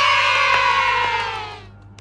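A cheer sound effect of high voices, one long "yay" that slowly falls in pitch and fades out about a second and a half in.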